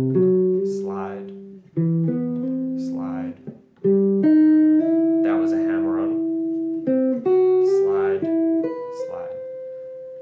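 Semi-hollow electric guitar playing a major triad exercise legato, the fretting hand sliding from note to note without picking. Each ringing note lasts about half a second to a second, joined to the next by a short glide.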